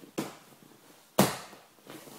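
Two sudden slaps on a vinyl-covered training mat as a person posts a hand and plants a foot to get up off it; the second, a little over a second in, is louder and fades briefly.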